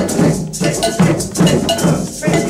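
A group of hand drums (djembes, bongos and a bass drum) playing together in a steady beat of about three strokes a second, with a cowbell clanking along on the beat.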